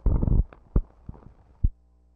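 Blank film leader running through the projector's sound head: a few irregular low thumps and pops from splices and dirt on the soundtrack. The sound then cuts off abruptly after about a second and a half, leaving a faint steady hum.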